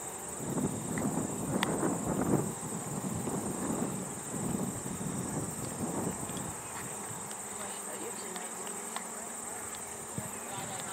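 Steady, high-pitched chirring of insects in a sunny grass field, with an uneven rough rumble underneath for the first six seconds or so.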